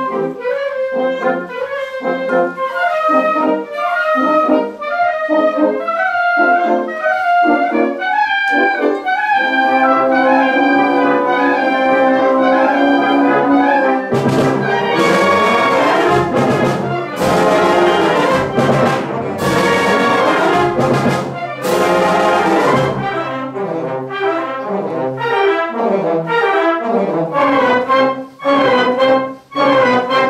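Conservatory wind band playing live, with woodwinds, brass and percussion. A light, detached rhythmic passage swells into sustained full-band chords about ten seconds in. The loudest stretch, from about a third of the way through to past two thirds, has repeated crashes, and then the band thins back to short, detached figures.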